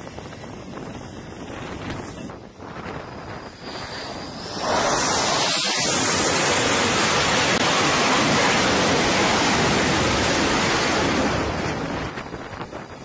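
Jet engine noise on an aircraft carrier flight deck. A rising whine leads into a sudden, loud roar about five seconds in, which holds steady for about six seconds and then drops away near the end.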